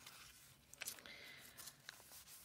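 Faint rustle of paper journal pages being turned by hand, with a few soft clicks about a second in and near the end.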